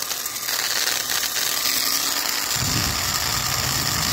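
An old electric drill, about 1950, maker unknown, running with no load: a steady high-pitched motor and gear noise. About two and a half seconds in, the sound grows fuller and deeper as the drill runs faster.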